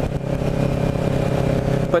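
Kawasaki Ninja 650R's parallel-twin engine running steadily at cruising speed, with wind rush over the microphone. The engine note holds even, without revving.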